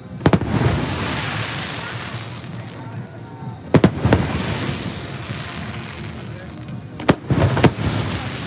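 Aerial firework shells bursting overhead: a loud bang shortly after the start, a pair of bangs near the middle and another pair near the end, with crackling and fizzing from the burning stars in between.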